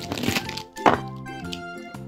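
Plastic felt-tip markers rustling and clicking against each other as a handful is scooped up off paper, with one sharp click a little under a second in, over steady background music.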